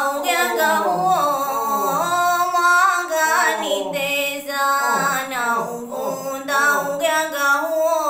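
A young woman singing, with long held notes that bend and slide in pitch.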